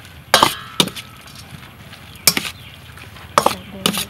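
Metal spoon clinking against a metal mixing bowl while tossing sliced beef salad: about five sharp clinks at uneven intervals, the first with a short ring.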